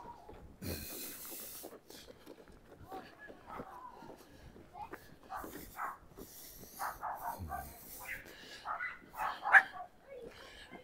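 Small dog barking and yipping at a distance, in short faint calls that grow louder near the end.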